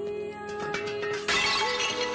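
A shattering, breaking crash: a scatter of sharp cracks from about half a second in, building to a loud crash a little past the middle. Held notes of background music sound throughout.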